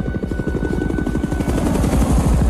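Helicopter rotors chopping fast and growing louder as the helicopters come in, with film score music underneath.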